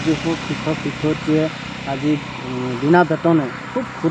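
A man speaking Assamese into reporters' microphones, in short phrases with brief pauses, over a steady low background hum.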